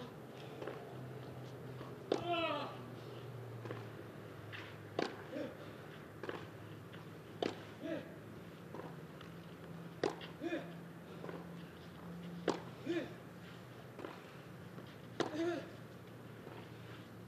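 Tennis rally on a clay court: racket strikes on the ball come about every 1.2 to 1.3 seconds, alternating louder and fainter as the ball goes from one end to the other. A short grunt from a player follows many of the louder strikes, over a steady low hum of the stadium.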